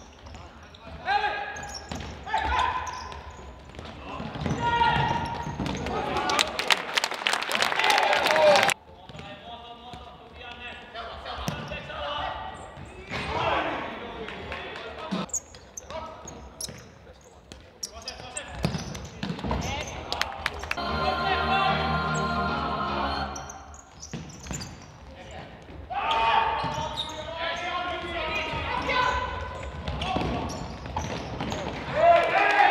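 Live sound of a futsal game in a large sports hall: players' voices calling out, with short knocks of the ball being kicked and bouncing on the hall floor. The sound cuts off abruptly about nine seconds in at an edit, and the game sound carries on afterwards.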